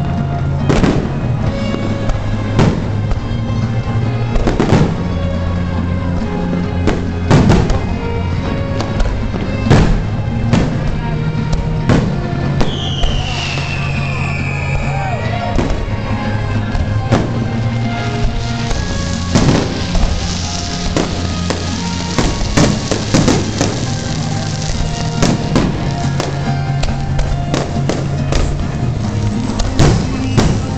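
Aerial firework shells bursting over loud pop music, a sharp bang every second or two. A falling whistle comes about halfway through, and a hissing crackle follows a few seconds later.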